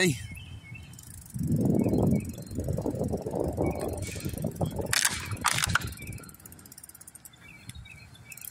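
A rapid, dense run of low mechanical clicking or rattling that starts about a second and a half in and fades out around six seconds, with a few sharp clicks about five seconds in.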